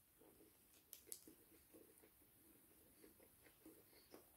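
Near silence with faint chewing of a mouthful of chicken burger, and a couple of soft clicks about a second in.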